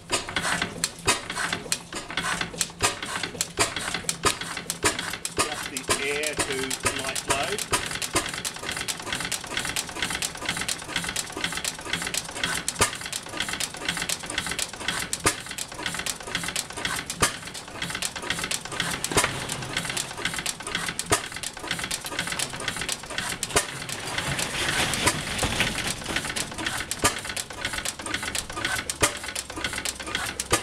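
1911 Tangye AA 'Benzoline' single-cylinder stationary petrol engine running on its original magneto ignition, with a rapid, steady mechanical clatter.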